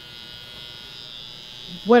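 Electric hair clippers running with a steady, high buzz as they trim along the neckline of a full beard.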